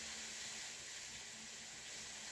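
Hair dryer running, a faint steady hiss of blowing air.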